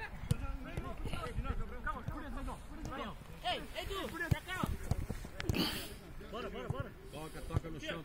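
Footballers' voices calling and shouting across a grass pitch, with a few sharp thuds of a football being kicked.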